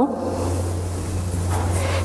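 A steady low hum with a faint even hiss above it.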